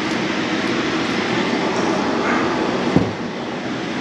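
Hand-operated metal pastelillo presses being folded shut over filled dough rounds, with one sharp click about three seconds in. A steady noise runs throughout.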